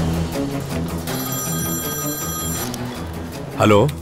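A mobile phone ringing in one steady ring of about a second and a half, over background film music, before it is answered.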